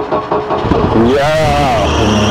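UAZ-452 'Bukhanka' van's four-cylinder petrol engine starting about half a second in, then running at a steady idle.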